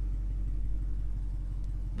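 The 6.4-litre HEMI V8 of a 2020 Dodge Charger Scat Pack Widebody idling, a steady low hum heard from inside the cabin.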